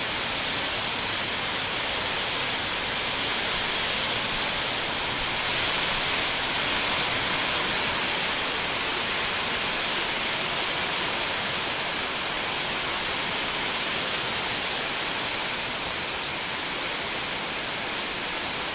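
Rain falling on the metal roof of an enclosed steel carport building insulated with closed-cell spray foam, heard from just below the ceiling: a steady, dense hiss, still loud through the foam.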